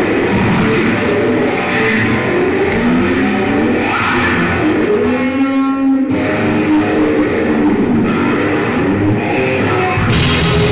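Live electric guitar solo on a Stratocaster-style solid-body guitar, full of bent, gliding notes. About five seconds in it holds one long note for about a second.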